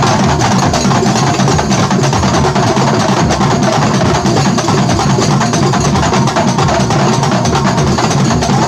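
Banyuwangi kuntulan ensemble drumming live: many terbang frame drums slapped by hand, with kendang and large jidor bass drums, in a loud, fast, dense rhythm that does not let up.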